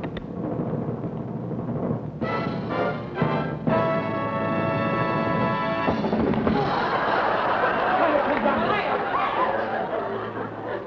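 Big band playing a few short brass chords, then one long held chord that cuts off about six seconds in. Studio audience laughter takes over for the rest.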